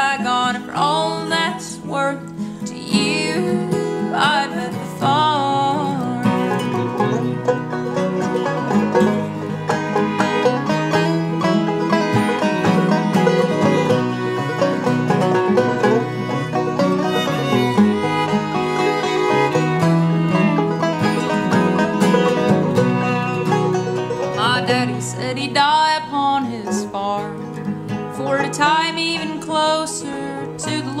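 Bluegrass string band playing an instrumental break: five-string banjo, acoustic guitar and fiddle together, after a sung line ends in the first few seconds.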